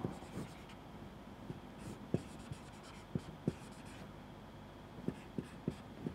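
Marker pen writing on a whiteboard: faint strokes and about ten short, sharp ticks as the tip meets and leaves the board, scattered irregularly.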